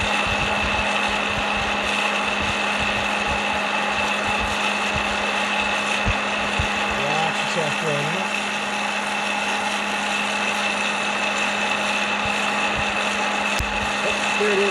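Hot-air popcorn popper running with a steady fan-motor whine and rush of air as coffee beans tumble in its roasting chamber, the roast about two minutes in and nearing first crack. A couple of sharp clicks come through, one about six seconds in and one near the end.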